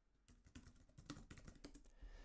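Faint, quick clatter of keys being typed on a computer keyboard, a short run of keystrokes starting about a third of a second in.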